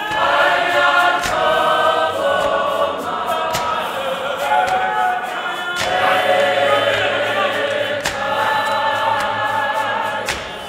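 A large men's choir singing a Zionist church hymn together in harmony, loud and continuous. A sharp beat sounds about every two seconds.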